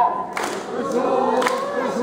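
Kanto festival hayashi: several voices chanting together, with two sharp taiko drum strikes about a second apart.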